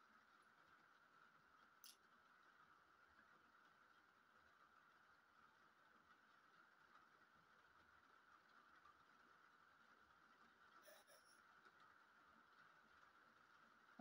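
Near silence: room tone with a faint steady whine, broken by a faint click about two seconds in and a few faint clicks late on from small plastic pieces being handled.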